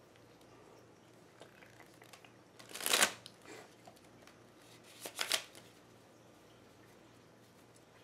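A deck of Uno cards being shuffled by hand: two short shuffles, about three seconds in and about five seconds in, the first the louder.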